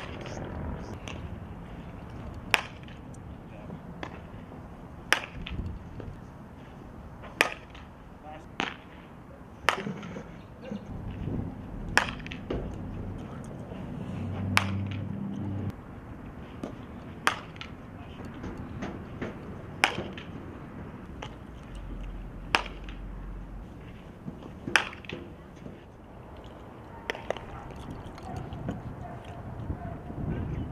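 Softball bat hitting pitched softballs in batting practice: about a dozen sharp cracks, one every two to three seconds.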